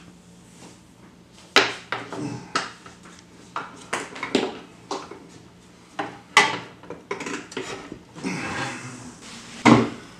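Knocks and clunks of workshop power tools and gear being moved and set down, with the sliding miter saw among them: about half a dozen sharp hits, the loudest about a second and a half in, in the middle and just before the end. A short scraping stretch comes just before the last hit.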